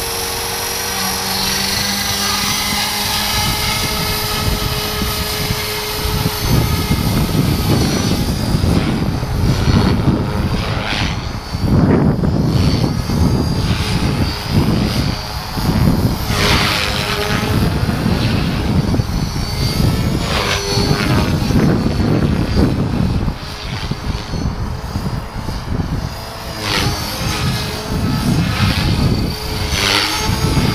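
ALZRC Devil Fast 450 SDC electric RC helicopter. For the first six seconds its motor and rotor give a steady whine while it sits on the ground at head speed. After that the rotor noise turns louder and uneven, surging and dropping again and again as it flies.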